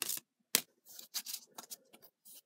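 A deck of tarot cards being handled and shuffled by hand: short dry slides and flicks of card stock, with one sharp snap about half a second in, then fainter scattered scrapes.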